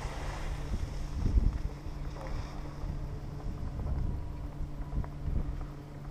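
Wind buffeting the microphone of a camera riding an open chairlift, rumbling unevenly with a stronger gust about a second and a half in, over a steady low hum.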